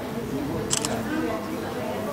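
Quiet background talking, with a short, sharp double click a little under a second in.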